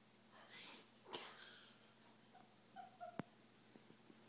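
A toddler's two short breathy bursts of breath and voice, the second sharper and louder, followed by a few brief high-pitched squeaky vocal sounds and a single sharp click.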